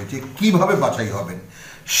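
A man speaking in Bengali, lecturing, then a sharp intake of breath just before the end.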